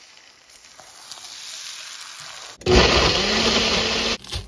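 Eggs sizzling in a frying pan. About two-thirds of the way in, this cuts to a single-serve blender running loudly, its motor whine rising a little as it comes up to speed while blending a thick smoothie.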